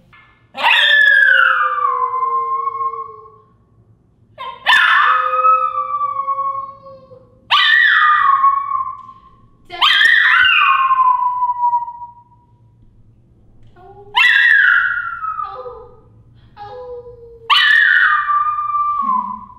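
A Pomeranian howling: six long howls, each starting high and sliding down in pitch, with a few short yips between the last two.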